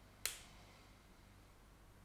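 Near-silent room tone with a single sharp click about a quarter of a second in.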